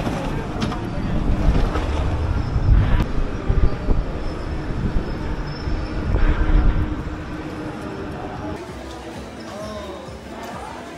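Gusty wind buffeting the microphone in the open, a loud, uneven low rumble that eases after about seven seconds, with indistinct voices around it.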